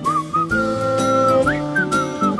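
Background music: a whistled melody, sliding between notes, over a plucked instrumental accompaniment.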